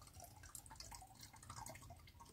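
Near silence with faint, scattered drips of liquid: freshly strained fermented tepache dripping and its foam settling.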